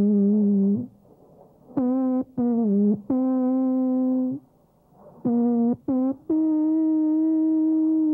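A giant alphorn, 154 ft 8 in (47 m) long, playing a slow tune of single clean notes with short pauses between phrases. Short notes lead into long held ones, and it ends on a higher note held for about two seconds.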